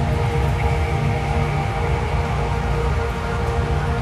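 Dark ambient music: a deep, steady drone with layered sustained tones above it, and no beat.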